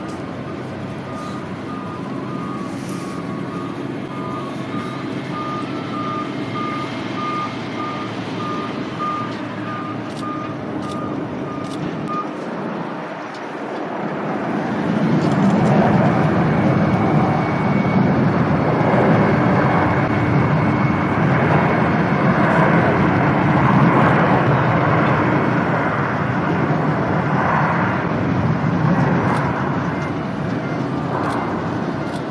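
Ground-vehicle warning beeper pulsing about twice a second over steady airport apron noise for the first twelve seconds. From about fourteen seconds a louder engine noise builds and holds.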